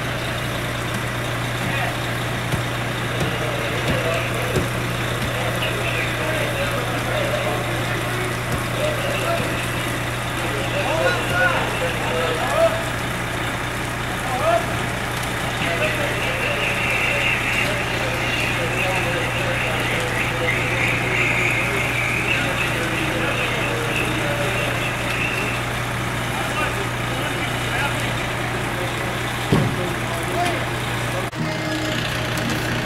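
Fire truck's diesel engine idling at the curb, a steady low drone, with indistinct voices of the crew in the background.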